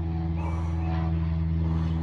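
Steady low motor hum made of several even tones, unchanging throughout, with soft puffs of breath about half a second in and again near the end.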